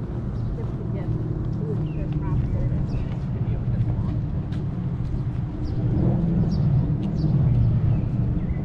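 Street ambience at a town intersection: the low engine rumble of traffic, swelling louder about six seconds in, with faint voices.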